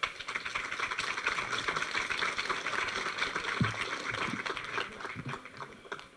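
Audience applauding, the clapping dying away near the end.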